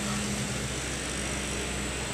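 Steady street background of idling vehicle engines, a continuous low hum under an even wash of noise.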